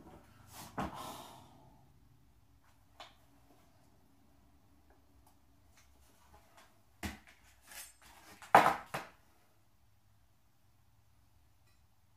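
A breathy sigh, then small handling clicks, then a few knocks and clatters on a tabletop as a large kitchen knife is picked up and its sheath set down. The loudest knock comes about nine seconds in.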